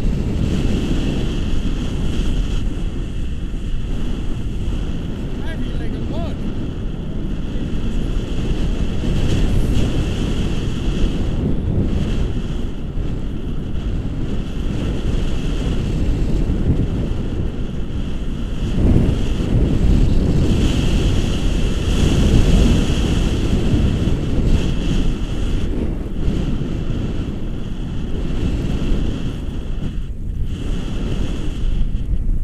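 Wind buffeting an action camera's microphone in paragliding flight: a loud, steady rumble that swells a little around two-thirds of the way through, with a thin high whistle that comes and goes.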